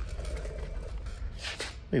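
Low steady hum of workshop background noise.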